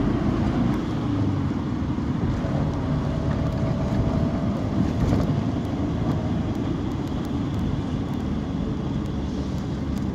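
Local bus in motion, heard from inside the cabin: its engine running and road noise, a steady low rumble that is a little louder in the first second.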